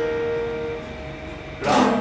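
Steel-string acoustic guitar: a strummed chord rings and fades during the first second. A fresh strum comes in about one and a half seconds in.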